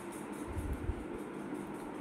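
A quiet pause with a faint low rumble, strongest about half a second to a second in.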